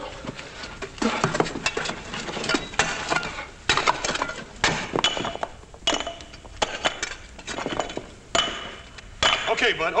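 Shovels and picks striking and digging into fallen rock: irregular clanks of metal on stone and clattering loose rubble, about one or two strikes a second.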